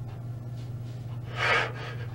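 A man crying, drawing one sharp sobbing breath about one and a half seconds in, over a steady low hum.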